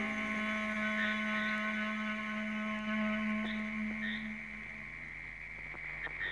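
Background score: a single low sustained note with overtones, held and fading away about five seconds in, with a few faint soft high tones over it.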